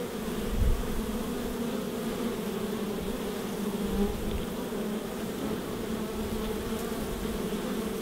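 A colony of honey bees buzzing at the hive entrance, a steady, even hum of many wingbeats. There is a brief low thump about half a second in.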